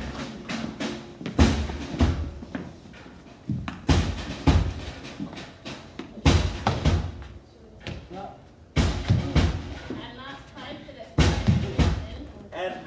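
Live drum kit played in a slow beat: pairs of heavy drum hits about every two and a half seconds, with voices of the group between them.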